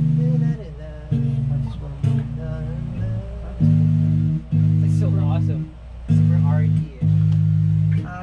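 Electric bass and electric guitar playing together through amplifiers: held low notes about a second long, in short phrases with brief breaks between them.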